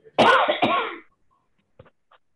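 A person's short, loud vocal burst in two quick pulses, like a cough.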